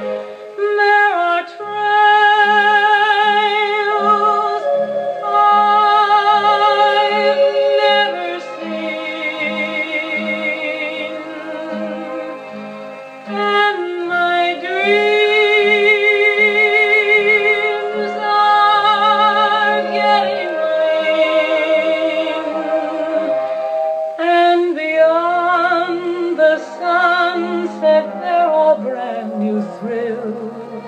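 Orchestral interlude in a slow ballad: a sustained melody with vibrato, swelling about halfway through, over a steady pulsing low accompaniment.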